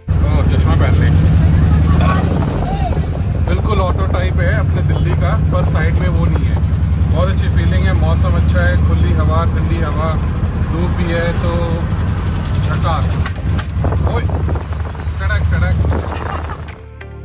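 Steady low drone of engine and road noise from an open-sided pulmonía taxi under way, with voices talking over it.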